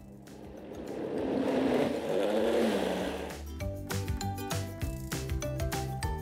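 Powerful countertop blender running, pureeing roasted apple and requesón into a very fine cream; the motor noise builds over the first second or so. About three and a half seconds in it gives way to music.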